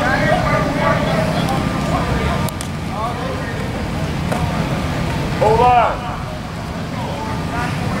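Coaches and players calling and shouting across a practice field, with a loud drawn-out shout of "hold on" about five and a half seconds in, over a steady low background rumble.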